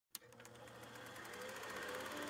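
Film projector running: a click at the start, then a rapid, even clatter that grows louder, over a faint steady hum.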